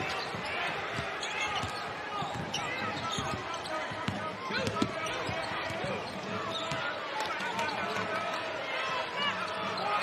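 A basketball being dribbled on a hardwood court, with sneakers squeaking on the floor, over the steady murmur of an arena crowd.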